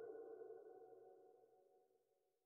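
Near silence: a faint held tone dies away within the first second.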